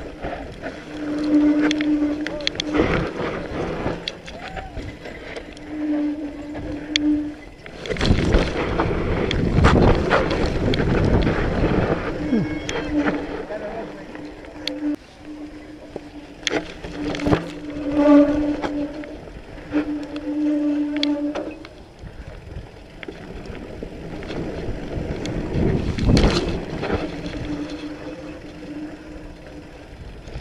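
Mountain bike descending a dirt singletrack, heard from a camera on the bike. Wind rushes over the microphone while the tyres and frame rattle and knock over the rough trail, with loud gusts at the fastest stretches. A steady buzzing tone comes and goes in patches of a few seconds.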